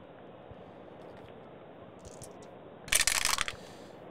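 Dice rolled into a wooden dice box, clattering briefly about three seconds in.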